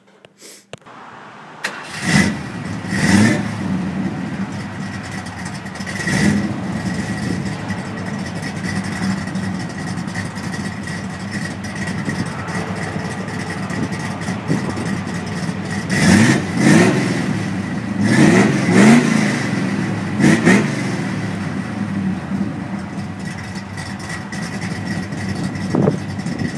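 A classic Ford sedan's engine starting about two seconds in, then idling with quick revs: a few near the start and a cluster about two-thirds of the way through.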